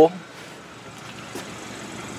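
Low, steady background noise with a faint click partway through, while the camera is moved around the car's trunk.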